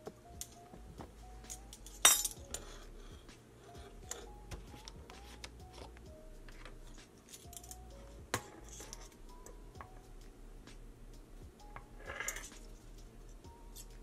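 Quiet background music playing a simple melody, with scattered clinks and clicks of a metal measuring spoon and a plastic vanilla bottle being handled; the sharpest click comes about two seconds in.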